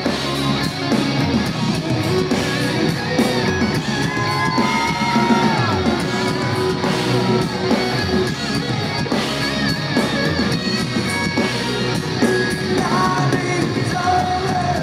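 Live hard rock band playing loud and steady, with electric guitars and drums and a voice singing over them, recorded from the crowd in a large venue. A bending, sustained melodic line comes in about four seconds in and returns near the end.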